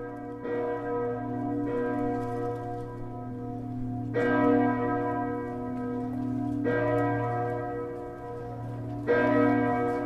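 Church bells ringing in slow, uneven strokes, about one to two and a half seconds apart, each stroke ringing on into the next. The strongest strokes come a little after four seconds in and near the end.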